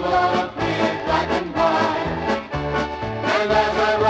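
Polka band recording playing with a bouncing oom-pah bass and a steady two-beat rhythm.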